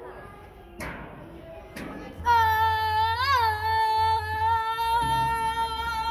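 A child's long held shout on one steady note, with a brief wobble in pitch partway through, lasting about four seconds while sliding down a plastic tube slide, with a low rumble beneath. A couple of short knocks come before it.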